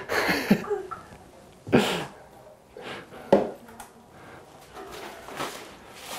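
Brief laughter, then quiet handling noises in a small room, with one sharp click a little past the middle.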